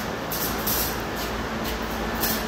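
Steady hissing background noise of a car repair shop, with a few brief rustles.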